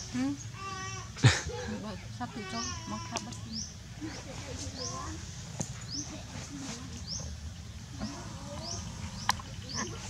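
A young animal's short high-pitched whimpering cries, a few in the first three seconds and again near the end, with a sharp knock just over a second in. A short rising chirp repeats over and over in the background.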